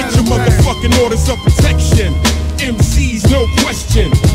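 90s East Coast hip-hop track playing: rapped vocals over a beat with deep bass and regular drum hits.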